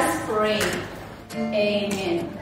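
A song with singing voices: held sung notes that glide in pitch, dipping briefly about a second in.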